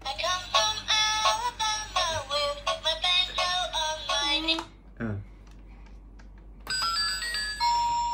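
Pink children's toy laptop playing a short electronic tune with a synthesized sung melody through its small speaker, stopping about four and a half seconds in. After a pause it gives a few stepped electronic beeps ending in one held tone as its keys are pressed.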